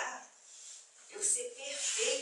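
A woman's speaking voice, with a short pause in the first second before the talk resumes.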